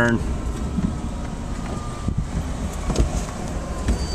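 Cabin noise of a Porsche 914 converted to electric drive, moving through a turn: a steady low rumble of road and wind, with a light knock about three seconds in.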